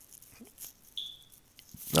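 A pause in speech: low room noise with a few faint clicks and one short, high beep about a second in that fades quickly. A man's voice starts at the very end.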